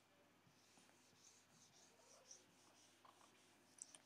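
Whiteboard duster rubbing across a whiteboard as the writing is wiped off: a faint series of rubbing strokes.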